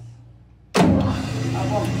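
Indoor fire hydrant system's electric fire pump starting direct-on-line. A sharp clack about three-quarters of a second in marks the starter switching in, and the motor comes straight up to a loud steady running hum.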